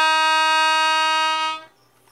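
Melodica (keyboard harmonica) holding one long, steady note, which stops about one and a half seconds in.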